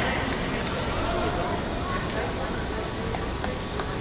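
Steady ambience of an indoor pool hall: a low murmur of distant voices, with no clear words.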